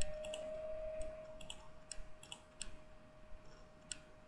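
Faint sharp clicks, about eight of them and several in close pairs, scattered irregularly over a faint steady tone.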